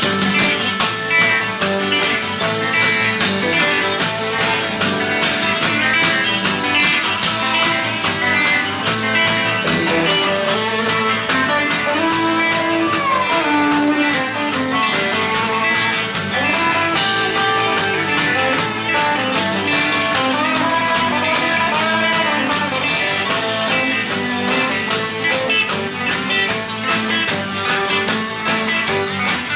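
A rock band playing an instrumental passage led by guitar, with some notes sliding up and down in pitch, over a steady drum beat.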